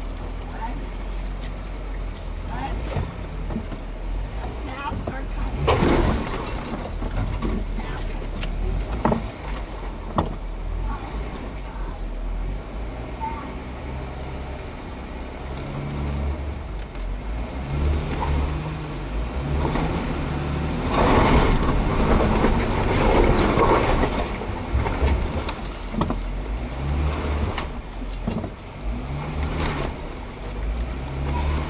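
Jeep Wrangler engines running during a strap recovery out of mud, rising and falling in revs from about halfway as the strap goes taut. About two thirds of the way through comes a louder surge of revving with tyres churning through mud and water.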